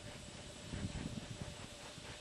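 Faint steady background hiss with a soft low rumble about a second in and a faint steady hum.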